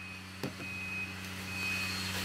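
A single light knock as a smartphone is set down on a wooden bench, over a steady low hum and a thin, high tone that sounds in short, uneven beeps.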